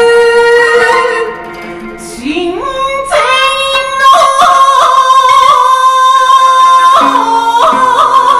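A woman's voice chanting shigin, Japanese recited poetry. A long held note fades about a second in. After a short dip the voice glides upward into a long, high held note with small ornamental turns and steps in pitch.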